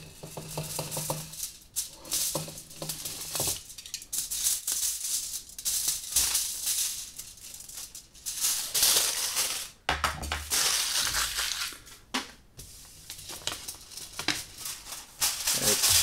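Thin aluminium kitchen foil rustling and crinkling in irregular bursts as it is trimmed with a utility knife and the crumpled offcut is pulled away and handled.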